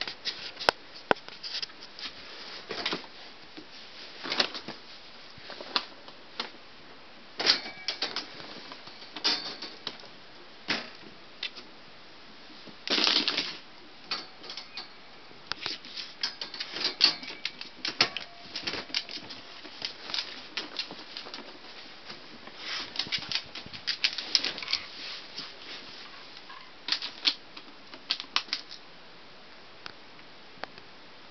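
Irregular clicking and tapping of a Manchester terrier's claws on a tile floor as it moves about, with a brief louder noise about halfway through.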